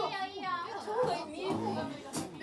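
Excited voices between songs: a short, high-pitched squeal at the start, then talking.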